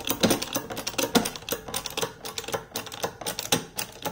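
Shop press being worked to bring its ram down onto a stack of steel coin-doming pucks, with quick, irregular clicking and ticking throughout.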